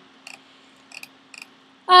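A quiet pause holding a low steady hum and three faint, short clicks about a second apart.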